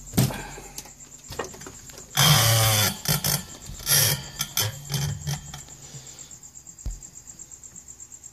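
Handling noise from a Yamaha CR-2020 stereo receiver being tipped onto its side on a workbench: knocks and clicks, a loud scrape a couple of seconds in, a shorter scrape about a second later, then lighter knocks and a thump near the end. A faint high-pitched pulsing runs underneath.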